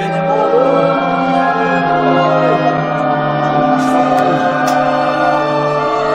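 Soundtrack music of long, held chords with choir-like singing.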